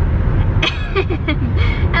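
Steady low rumble of road and engine noise inside a moving car's cabin, with a burst of laughter about a second in.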